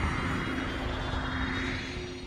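Intro sound effect for a news channel's animated logo: a rumbling noise swell with a low tone held under it, beginning to fade near the end.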